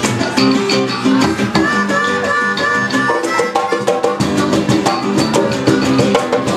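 A live acoustic reggae band playing: hand drums keep a steady beat under a strummed guitar, with a harmonica line held high for a couple of seconds in the middle.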